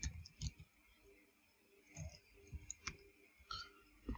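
Faint keystrokes on a computer keyboard typing code, a few near the start and a run of scattered clicks in the second half.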